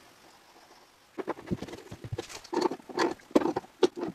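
Irregular metal clinks and taps of hand tools working a brass gas shutoff valve onto a black iron gas pipe fitting. They start about a second in and come several to the second.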